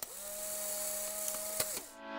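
Editing sound effect under an animated credits transition: a steady two-tone whine over hiss, opening with a click and lasting nearly two seconds, with another click near the end before it fades out.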